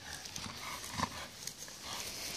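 Faint sounds of a dog nosing an inflatable ball about on grass, with a light knock about a second in.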